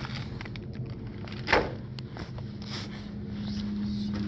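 Clear plastic zip-top snack bag rustling and crinkling as it is handled, with one sharper, louder rustle about a second and a half in. A steady low hum runs underneath.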